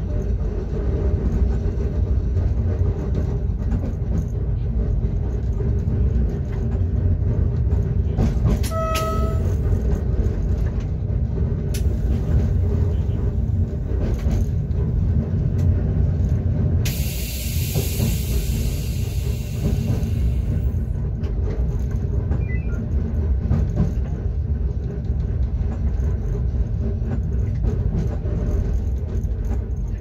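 Class 425.95 electric multiple unit running on the track, heard from inside the driver's cab: a steady low rumble of wheels and traction equipment. A short beep sounds about nine seconds in, and a burst of hiss comes from about 17 to 21 seconds.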